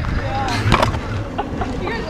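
Powerchair wheels rolling over rough asphalt, a steady low rumble, with one sharp knock about three-quarters of a second in.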